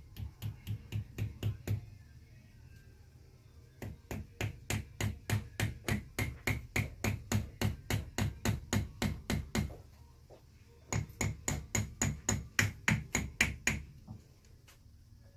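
Small hammer tapping a prosthetic socket's lock fitting to seat it: rapid, light, even strikes about four a second, in three runs with short pauses about two and ten seconds in.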